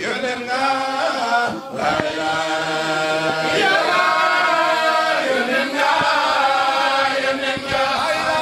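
A man's voice chanting a devotional melody into a microphone, holding long, drawn-out notes with wavering ornaments, with short breaks for breath about two seconds in and again past the middle.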